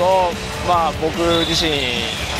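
A man speaking Japanese over background music.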